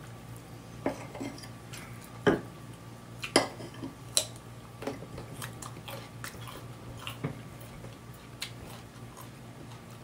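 Eating at a table: chopsticks and utensils clicking and knocking against dishes, with chewing, in a series of irregular sharp clicks over a steady low hum.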